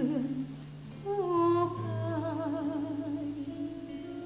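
A woman singing a slow melody in held notes with vibrato over acoustic guitar. One phrase glides down and ends about half a second in, and the next begins about a second in.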